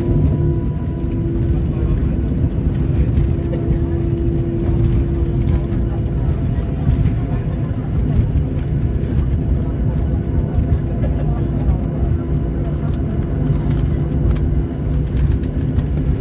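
Jet airliner's cabin during the landing rollout: a steady low rumble of the engines and the wheels on the runway, with a few steady engine tones running through it.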